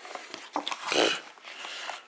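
Rustling and crinkling of a cardboard-and-plastic tyre repair kit package being handled, with a short louder rasp about a second in.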